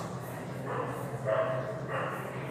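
A dog barking faintly: three short barks about half a second apart.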